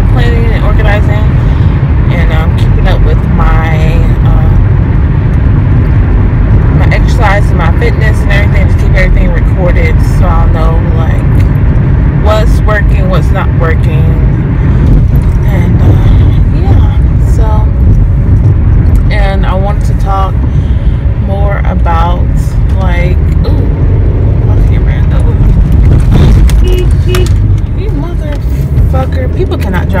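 Steady low road and engine rumble inside a moving car's cabin, with a voice talking over it at times.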